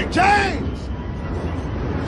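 Steady low rumble of a moving truck, with a man shouting once, loudly, at the start.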